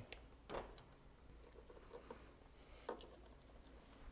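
Near silence with a few faint short clicks, the clearest about half a second in and another near three seconds: wire strippers biting and pulling the insulation off a low-voltage control wire.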